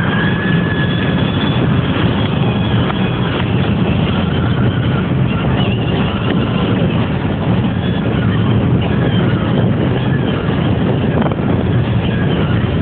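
Steady in-cabin road noise of a car at highway speed: a constant low rumble of tyres and engine that stays even throughout.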